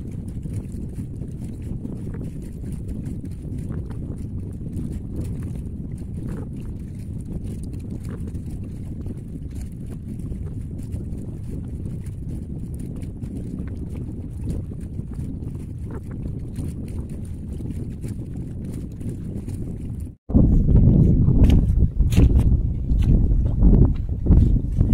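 Wind rumbling steadily on the microphone outdoors. About four seconds before the end it turns louder and gustier, with a few knocks.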